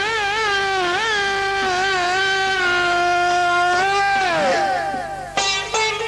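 A man singing a long, ornamented phrase in Khorezmian Uzbek traditional style: a wavering line, then a long held note that falls away in a downward glide. Near the end, doyra frame-drum strikes and plucked string notes come in.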